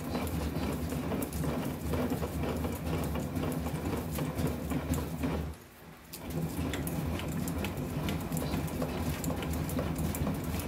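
Hand-cranked bat rolling machine turning, its rollers pressing a baseball bat as it passes through, giving a steady low rumble with dense crackling clicks. The sound stops for about half a second a little past the middle, then carries on.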